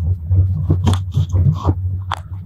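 Steady low rumble of a Strizh passenger carriage running at speed, heard from inside, with irregular soft clicks and rustles close to the microphone.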